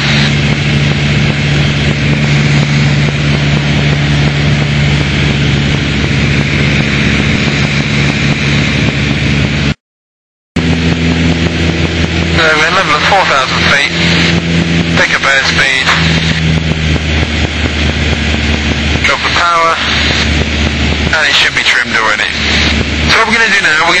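Piper Warrior's four-cylinder engine and propeller droning steadily inside the cabin. A brief gap of silence comes about ten seconds in, and after it the drone sits at a different pitch.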